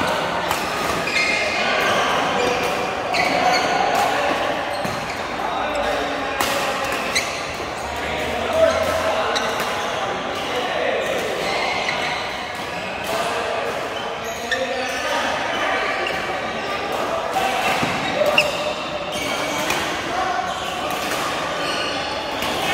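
Badminton rackets hitting shuttlecocks on several courts at once: an irregular run of sharp pops, with players' voices in the background, echoing in a large hall.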